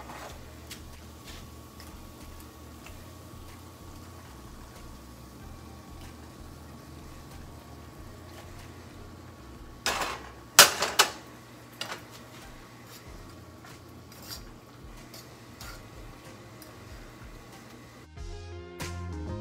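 A metal fork clinking and scraping against a pot and skillet as cooked rigatoni is moved into meat sauce and stirred, with a few loud clanks about ten seconds in, over a steady low hum.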